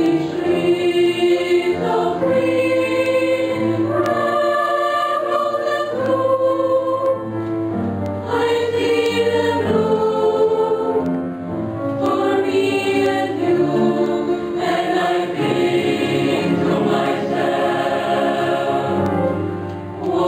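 A mixed choir of men's and women's voices singing, with long held chords that move to a new pitch every second or two.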